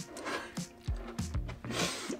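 Soft background music, with a few light knocks and rubbing as a plastic one-gallon jug is picked up and handled.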